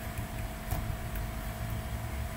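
Steady low background hum with a faint constant tone, and a few faint light ticks from a stylus writing on a tablet.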